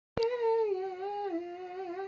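A woman humming a tune a cappella, without words: a few held notes that step down in pitch. It begins abruptly with a click at the very start.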